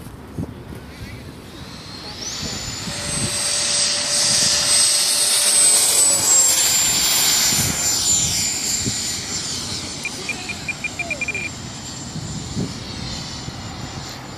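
A 90 mm electric ducted fan on a Freewing F-104 Starfighter RC jet, run on 8S power, going to full throttle for takeoff. Its high whine rises sharply about two seconds in and is loudest for several seconds. It then dips slightly in pitch and fades as the jet climbs away.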